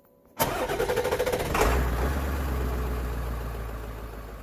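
An engine being cranked by its starter, rapid even pulses, catching about a second and a half in and settling into a low, steady idle that slowly fades.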